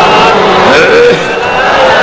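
A gathering of many men's voices chanting durood (blessings on the Prophet) together in a drawn-out, melodic recitation.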